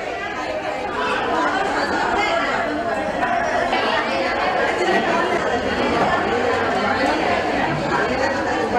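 Crowd chatter: many people, mostly women, talking at once, a steady babble with no single voice standing out.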